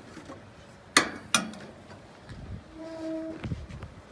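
Two sharp clicks less than half a second apart about a second in, from cooking gear on the cart being handled, then a short steady tone near the end.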